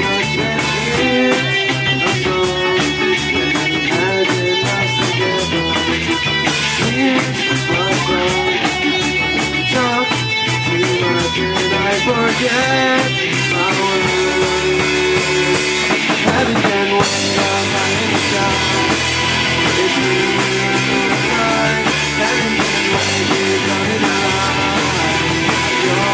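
Live rock band playing: electric guitars over a drum kit, at a steady level.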